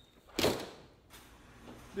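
An interior door swinging: a single short swish about half a second in that fades within half a second, followed by quiet room tone.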